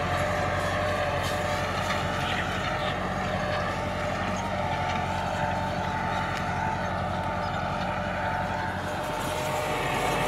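Massey Ferguson 375's four-cylinder diesel engine running steadily under load as it pulls a 16-disc offset disc harrow through tilled soil.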